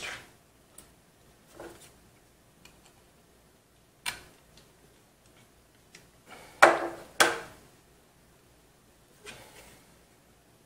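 Scattered clicks and knocks from handling a PC case's drive mounting tray and a screwdriver: a sharp click about four seconds in, then two louder knocks half a second apart about seven seconds in, with a few softer taps.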